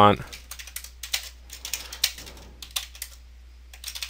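Typing on a computer keyboard: an irregular run of keystrokes entering a few short words, with a brief pause near the end.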